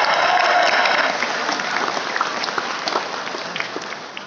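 Audience applauding, loudest at first and thinning out into scattered individual claps toward the end.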